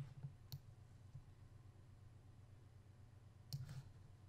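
Near silence over a faint low hum, broken by two faint computer mouse clicks within the first half-second.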